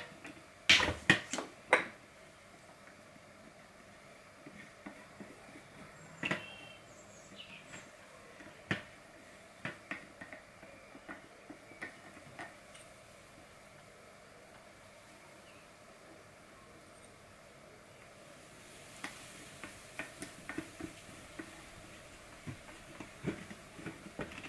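Small, scattered clicks and taps of hands working the plastic fittings on a water filter vessel's head while PTFE tape is wrapped over the threads and a plastic hose connector is screwed on. There are several sharp clicks in the first two seconds, then occasional single ticks, and a run of small clicks near the end.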